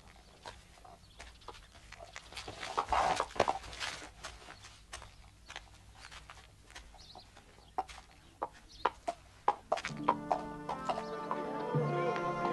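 Donkey hooves and footsteps knocking irregularly on stony ground, with farm-animal sounds; music comes in about ten seconds in.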